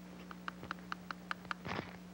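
Metal dental instrument handle tapping on teeth in a percussion test for tenderness: a run of light, quick clicks about five a second over a steady low hum, with a brief breathy sound near the end.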